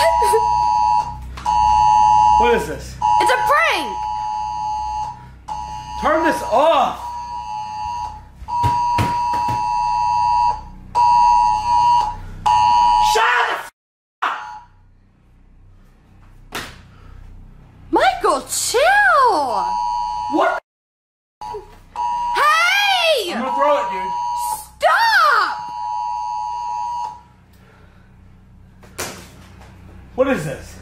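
Emergency alert attention tone, the two-tone alarm of a wireless emergency alert, sounding in long repeated beeps with short gaps. It stops about halfway through and comes back for a stretch later, with a person's voice heard between the beeps.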